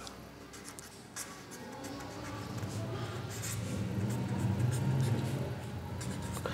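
Pen scratching on paper in quick short strokes as words are written out.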